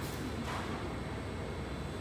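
Steady low rumble of background room noise, with a faint, indistinct voice briefly about half a second in.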